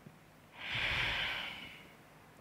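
A person's single audible exhale, a sigh of about a second that swells in just after the half-second mark and fades away.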